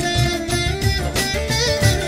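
Background music with a melody over a steady beat.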